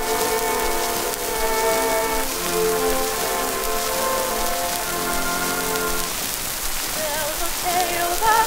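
Early acoustic recording of an orchestra played from a 1919 Edison disc: sustained notes of the introduction under constant hiss and crackle of record surface noise. Near the end, wavering notes with a wide vibrato come in, the start of the female vocal trio.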